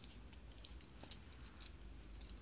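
Near silence: room tone with a few faint, soft clicks.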